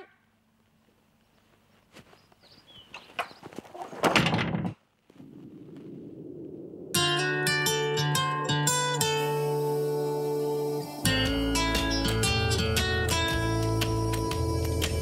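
A few faint knocks leading to a short thud about four seconds in, then, from about seven seconds, theme music of plucked strings over a steady bass, with the bass growing fuller about four seconds later.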